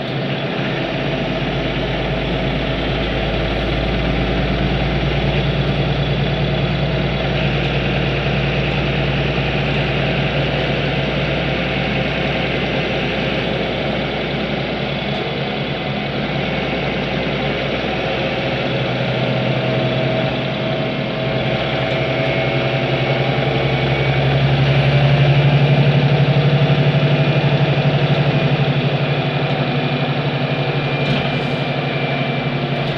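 Engine and drivetrain of an Ursus City Smile 12LFD city bus heard from inside the passenger cabin, a steady low drone. It grows louder a little past the middle and is loudest about three-quarters of the way through, then eases off.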